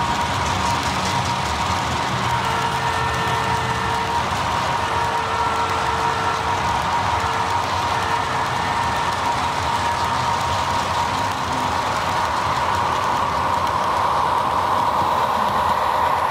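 Model train rolling past: a steady rumble and hiss from a long string of loaded coal hoppers running on the track, with a steady whine that grows louder near the end as the trailing RS3 diesel locomotive comes by.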